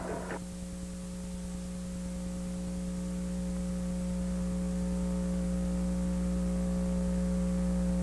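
Steady electrical mains hum: a low buzz with several evenly spaced overtones, growing slowly louder.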